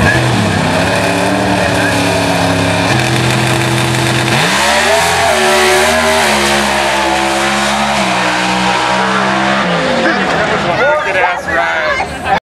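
New Edge Mustang drag car launching off the line and running hard down the drag strip, its engine note holding and then stepping and bending in pitch several times as it accelerates.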